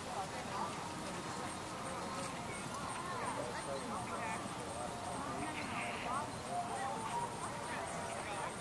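Indistinct voices talking at a distance, words not made out, over a steady outdoor background.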